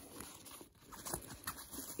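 Faint rustling and small scrapes of a hand moving about inside the fabric-lined compartment of a diaper bag backpack.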